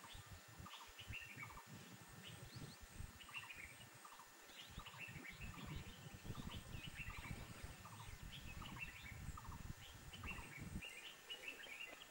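Faint bird chirps, short notes repeated every half second or so, over a low irregular rumble that stops about a second before the end.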